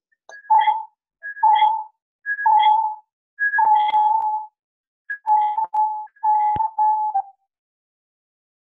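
A series of short electronic-sounding beeps heard over a video-call audio line, about one a second. Each is a higher note dropping to a lower one, and the later ones run longer and are broken up. A sharp click falls in the middle of one of the last beeps.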